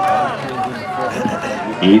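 Indistinct talking: voices that cannot be made out.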